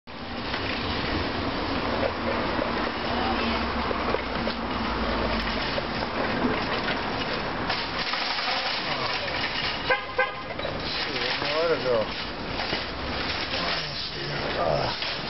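Loud, noisy outdoor ambience with indistinct voices, and a short car-horn toot about ten seconds in.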